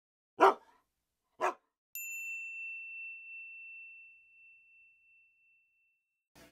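Production logo sting: two short dog barks about a second apart, then a single clear ding that rings on and slowly fades over about three seconds.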